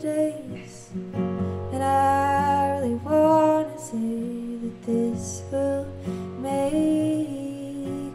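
Indie-folk song performed live: a woman singing held phrases over acoustic guitars.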